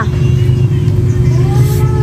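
A steady, loud low drone of a running motor, with a faint steady hum above it.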